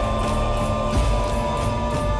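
Music from the music video: held tones over a pulsing low beat.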